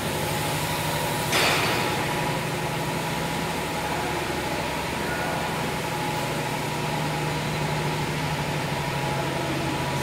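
Tissue paper converting machines running: a steady mechanical hum with a constant low drone and a fainter higher tone. A brief hiss comes about a second and a half in.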